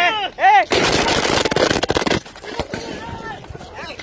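Gunfire: a rapid string of shots that thins out after about two seconds, with a loud shout near the start.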